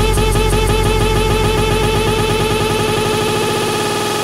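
Progressive psytrance build-up: a rapidly repeating synth roll that packs tighter and faster, with the deep bass fading away near the end.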